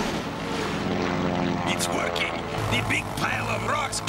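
Cartoon sound effect of a propeller aircraft engine, a steady droning hum that comes in about two and a half seconds in, mixed with voice-like cartoon vocal sounds.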